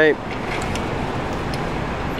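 Steady city street noise, the even hum of road traffic, with no distinct events in it.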